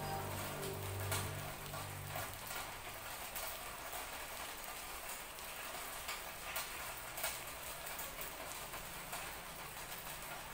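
Steady rain falling, with scattered sharper drops ticking on surfaces. Soft music with held tones fades out in the first two seconds.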